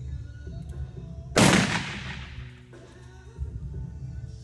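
A single blank-cartridge revolver shot about a second and a half in, loud, with a reverberant tail that dies away over about a second in a metal arena building. Background music plays throughout.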